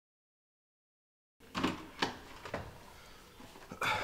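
Dead silence for about the first second and a half, then three sharp knocks on a wooden door about half a second apart, and a louder clack near the end as the door is opened.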